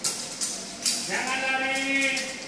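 A few sharp knocks in the first second, then a person's drawn-out call, one note held for about a second.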